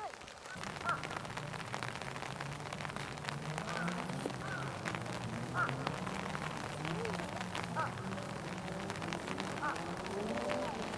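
Indistinct, distant voices murmuring, with a few short bird calls scattered through and light rain ticking.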